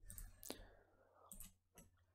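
Near silence with a few faint clicks from working a computer: one about half a second in and a couple more past the middle.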